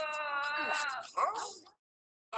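Cat meowing: one long meow falling slightly in pitch, then a shorter wavering cry about a second in.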